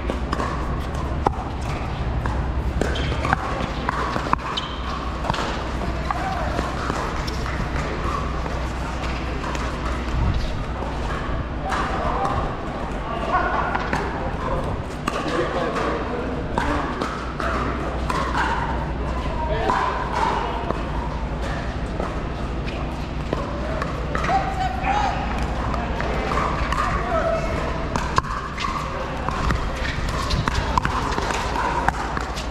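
Pickleball paddles striking the plastic ball, heard as sharp pops scattered irregularly through play, over background chatter of voices.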